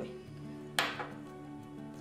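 Soft background music with one sharp click a little under a second in: a small glass spice jar being set down on the countertop.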